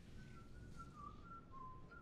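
A person whistling faintly, a short tune of about half a dozen notes that steps up and down and ends on a lower, longer held note.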